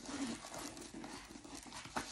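Hands rummaging in a leather tote bag's inner pocket: soft rustling and handling noise, with one sharp tap near the end.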